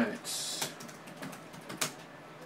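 Trading cards and plastic card holders being handled: a short rustle early, then a few light clicks, the sharpest near the end.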